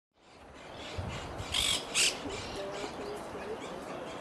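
Natural background fading in, with two short, harsh bird calls about half a second apart, around a second and a half in.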